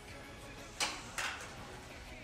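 A small plastic RC toy car coming off a TV stand and landing on a tile floor: two short clattering hits about half a second apart, a little under a second in. Quiet background music runs underneath.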